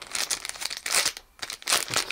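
Clear plastic packaging of a carded pin-badge set crinkling as it is handled in the hands: a run of crackles with a short pause just past a second in.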